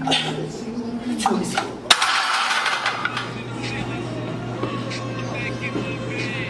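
Weight-room background sound: a steady low hum and indistinct voices, with one sharp knock about two seconds in.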